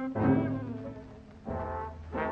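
Jazz big band's brass section playing two loud held chords, the first just after the start and fading away, the second about three-quarters of the way through, over low sustained notes, on an old film soundtrack.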